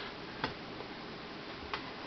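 Two light clicks from a plastic action figure as it is handled and set down to stand on a wooden tabletop, over faint hiss.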